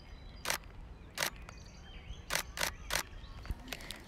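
Nikon D7200 DSLR shutter firing about five times: two single shots, then three in quick succession, with a few fainter clicks near the end, over faint outdoor background noise.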